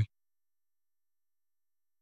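Silence: a narrated phrase cuts off right at the start, then nothing is heard.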